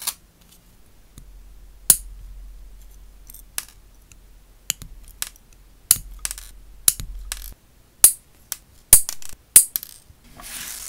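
Stainless steel nail clipper snipping through a fine metal chain, a run of sharp metallic clicks at irregular intervals, with the clearest snaps about two seconds in and near the end.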